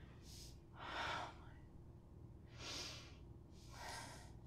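A woman breathing heavily in deep, audible sighs: three or four separate breaths, the loudest about a second in and two more near the end.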